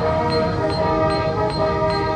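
Marching band playing sustained, horn-like chords over a steady metronome click, a little over two clicks a second.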